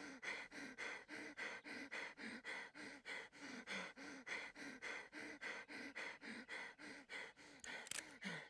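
A man's rapid, heavy panting: short voiced gasps, about three a second, in an even, unbroken rhythm.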